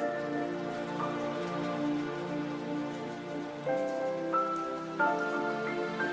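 Slow, gentle background music of held chords, changing note about once a second or so, with a soft rain-like hiss beneath it.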